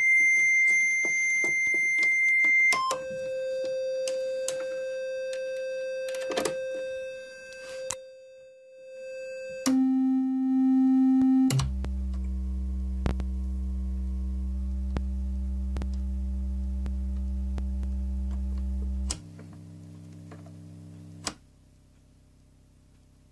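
Befako Even eurorack VCO sounding steady held tones that step down in pitch, from a high tone to middle and then low tones, as it is adjusted against a chromatic tuner. Clicks fall between some of the tones, and the sound cuts out about a second before the end.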